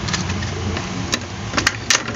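Small ceiling fan's electric motor humming steadily, running again after its repair. Three sharp clicks in the second half as the plastic blades are handled and fitted onto the housing.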